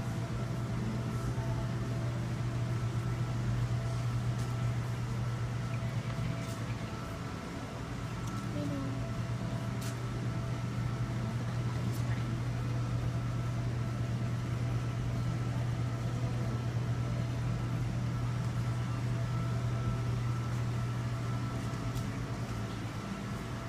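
Steady low hum of the pumps and filters running on a row of aquarium tanks, with a few faint clicks.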